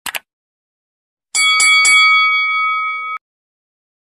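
Subscribe-button animation sound effects: two quick clicks, then a notification bell struck three times in quick succession. The bell rings on for over a second and is cut off abruptly.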